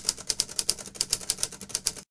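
A fast, even run of sharp clicks, about seven a second, like keys being typed. It starts suddenly and cuts off abruptly near the end.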